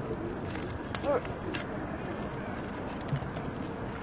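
Handling noise from a small juice carton and a paper wrapper: a few short clicks and rustles over steady outdoor background noise.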